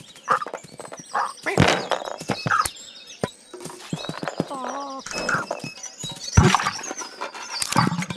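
Cartoon sound effects for a cat chasing a squirrel: quick scampering, knocks and thuds, mixed with short squeaky, warbling animal noises.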